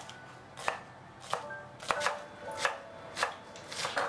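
Chef's knife slicing through scallions and striking a bamboo cutting board: a steady rhythm of about seven cuts, a little more than half a second apart.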